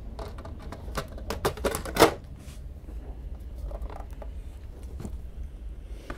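Light clicks and knocks of a brass ship's clock case and its small parts being handled, with a quick cluster about one to two seconds in and the loudest knock near two seconds, over a low steady hum.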